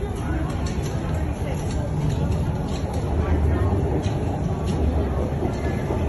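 Low rumble of a subway train in the station, under the indistinct voices of people on the platform.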